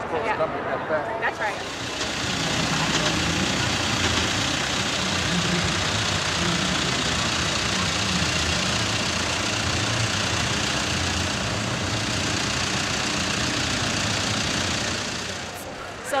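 A John Deere utility tractor's diesel engine running steadily at low speed as it tows a passenger tram, with a steady hiss of outdoor ambience over it. It comes in about a second and a half in and fades just before the end.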